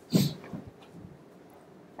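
A short, breathy burst close to a handheld microphone just after the start, then faint room tone.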